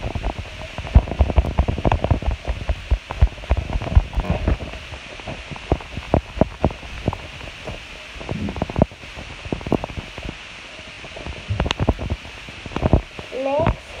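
Slime being squished and pressed by hand, giving a rapid run of squelching clicks and pops that are dense for the first few seconds, thin out in the middle and bunch together again near the end.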